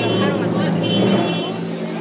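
Processional brass band with sousaphones and saxophones playing long held chords, with crowd voices mixed in.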